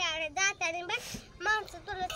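A child's high voice singing in short wavering phrases.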